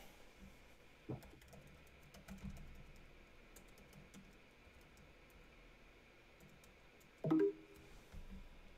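Faint, irregular keystrokes on a computer keyboard as a terminal command is typed, with a brief louder sound near the end.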